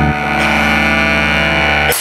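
Live rock band's distorted electric guitars and bass holding a long sustained chord, the low note stepping down once or twice, cut off by a sharp hit at the very end.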